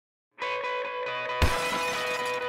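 Logo-intro music sting: a sustained chiming chord starts about half a second in, and about a second later a loud shattering hit strikes, with the chord ringing on after it.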